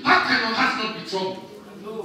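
A man's raised voice preaching in loud, short phrases, trailing off in the second half.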